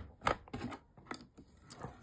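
Light clicks and taps of paper being shifted and lined up on a plastic envelope punch board, several small, irregular ones spread across the two seconds.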